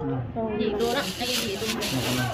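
Thin plastic bag rustling and crinkling as it is handled and opened, starting about a second in, over women's voices.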